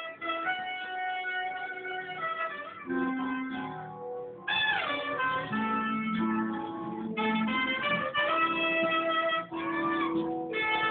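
Live instrumental music from a trumpet and a guitar playing together, with long held notes. One note slides steeply down about halfway through.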